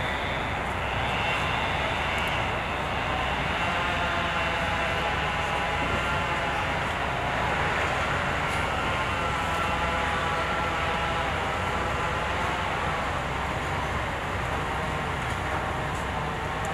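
Vintage electric locomotive moving slowly along the track toward the listener: a steady whine of several pitches over a low rumble.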